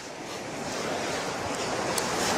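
Ocean surf washing onto a sandy beach: a steady rush of breaking waves that grows slowly louder.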